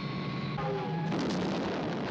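Television sound effects of a jet fighter being hit and going down: a steady rushing noise of jet engine and explosion, with a few faint tones about half a second in.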